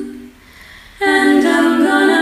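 A cappella singing in layered vocal harmony: a held chord fades away, there is a short pause of about half a second, and the voices come back in together about a second in.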